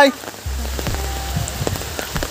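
Steady rain falling on a wet paved path and pattering on an umbrella overhead, with many small scattered drop ticks; a low rumble comes in about half a second in.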